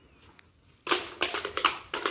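An aluminium drink can being crushed underfoot by a child's boot: a rapid run of crackling, crinkling metal clicks that starts about a second in.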